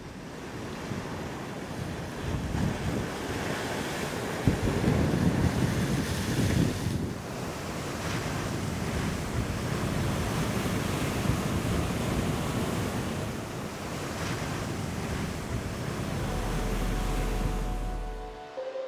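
Ocean surf: a continuous wash of waves, swelling loudest a few seconds in, with wind on the microphone.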